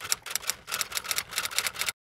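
Typewriter sound effect: a quick run of key clacks, about eight to ten a second, that stops abruptly just before the end.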